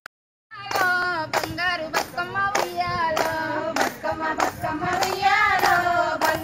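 Women singing a Bathukamma folk song with steady hand claps keeping time, a little under two claps a second. It starts about half a second in, after a brief click.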